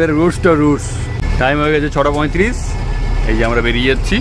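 People talking over the steady low rumble of a bus's diesel engine, heard from inside the cab.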